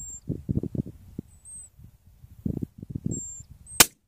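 A single gunshot, one sharp crack near the end, after faint muffled low sounds.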